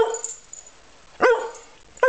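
Rough collie barking twice, one short bark right at the start and another a little over a second in. The owner takes the barks as asking for a cookie.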